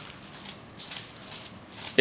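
Thin Bible pages being leafed through by hand: faint, scattered paper rustles and flicks.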